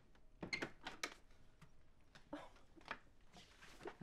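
A few faint clicks and knocks as a front door's lock is undone and the door is opened.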